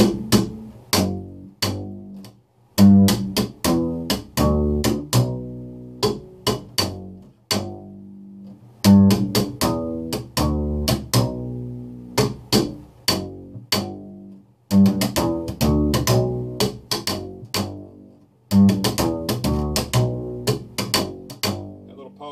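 Upright bass played slap style: plucked notes punctuated by sharp percussive slaps and string snaps against the fingerboard, playing a slap bass ending lick in G. It is played about five times over, each phrase separated by a short gap.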